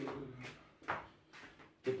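Indoor handling noises: a muffled murmur at the start, then a sharp knock a little under a second in and a softer bump after it, like a drawer or door being moved.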